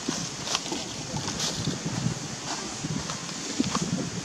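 Outdoor ambience with wind buffeting the microphone as an uneven low rumble, and a few faint ticks.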